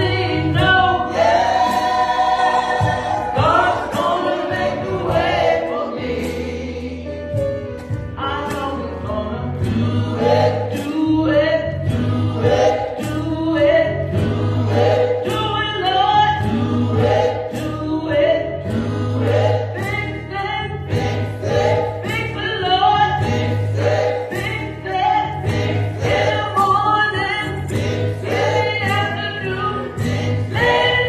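Gospel choir singing in parts through microphones, backed by a band with a steady beat and a pulsing bass line.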